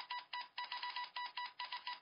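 Rapid electronic beeps and chirps, about four to five a second on a steady high tone: a computer-data sound effect.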